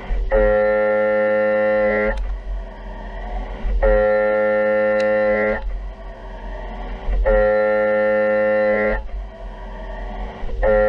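CNC vertical mill's end mill cutting a metal block on a high-speed equal scallop toolpath. A steady pitched cutting whine sounds three times, each lasting about two seconds and each time at the same pitch, as the tool engages on each pass, over a constant low machine hum.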